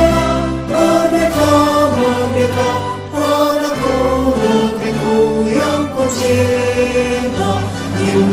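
A mixed choir of men's and women's voices singing a ceremonial song in Indonesian, in long held notes that break between phrases about three and six seconds in.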